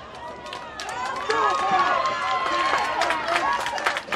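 Spectators at a youth football game shouting and cheering, many voices at once, swelling about a second in as a ball carrier breaks into the open on a long run.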